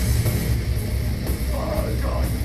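Old-school death metal band playing live: distorted electric guitars over bass and drums with constant cymbal wash.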